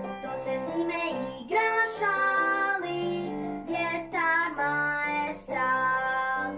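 A young girl singing a Croatian-language children's song, accompanied by guitar.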